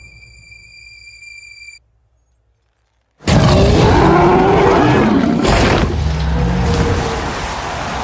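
Film sound effects: a high steady tone that stops, a pause of silence, then a sudden loud crash of water and a gliding roar as a giant sea reptile leaps from the water to seize a hanging shark. A second heavy impact follows about two seconds later, and the rush of water continues.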